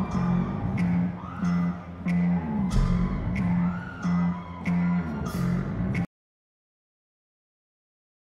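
Rock band opening a song live: a repeating guitar figure over an even beat, cut off suddenly about six seconds in.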